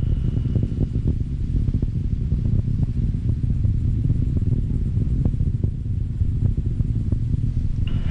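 Atlas V rocket in powered flight: a steady low rumble with faint scattered ticks.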